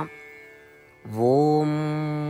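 A single voice chanting a Sanskrit verse. A held note breaks off at the start, and about a second in a new syllable slides up in pitch into a long, steady held note.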